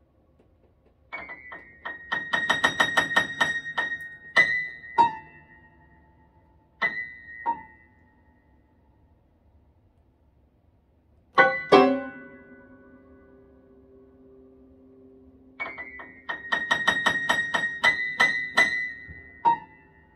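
Boston grand piano played solo. A rapid flurry of notes comes about a second in and another near the end, with a few single notes between them, and a loud low chord near the middle keeps ringing for several seconds. The notes keep ringing because the sostenuto (middle) pedal is held down for the whole piece.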